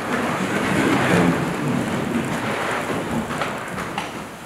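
A congregation getting to its feet in church: a steady wash of rustling, shuffling and movement noise, without speech.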